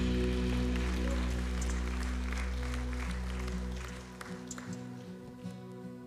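Worship band music winding down: a sustained low chord fades out over about four seconds under light congregation applause, then soft keyboard notes play on quietly.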